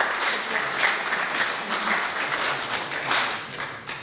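Audience applauding, a dense patter of many hands clapping that dies away near the end.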